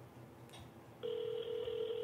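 Ringing tone of an outgoing phone call played through a smartphone's speaker: one steady ring starting about a second in, while the call waits to be answered.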